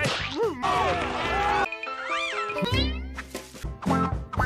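Cartoon soundtrack in short snippets: character voices, music and sound effects with sliding pitches, cutting abruptly from one clip to the next about once a second.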